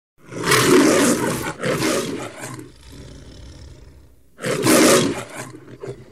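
A loud, rough roar in two surges, then a quieter stretch, then a third surge about four and a half seconds in.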